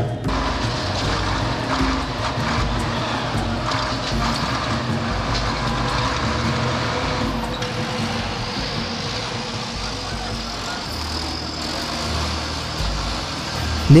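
Steady street noise of vehicle engines and traffic, with no sudden events.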